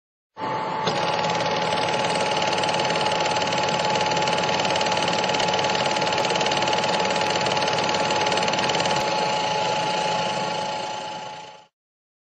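A steady machine-like clattering with a constant high hum under it, starting suddenly just after the start and fading out near the end, with a few faint clicks along the way.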